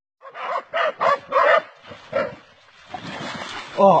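Dogs barking in quick, excited bursts, about five sharp barks in the first two seconds or so, at a snake they are attacking. A steadier noise follows, and a man exclaims near the end.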